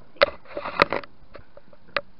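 Camera handling noise as the camera is knocked and moved: three sharp knocks with a rustle against the microphone in between.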